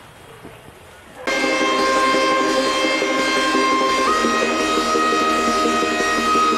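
Faint room tone, then about a second in an end-screen music track starts: held, sustained chords, with the top note stepping up in pitch near the end.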